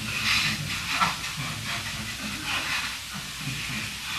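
Audience laughing: an irregular murmur of many voices.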